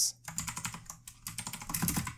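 Typing on a computer keyboard: a quick run of keystrokes, with a short pause about a second in.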